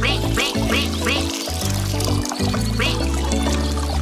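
Children's-song instrumental music with a steady beat, over which a cartoon duckling quacks: four quick falling calls in the first second or so and one more near the end.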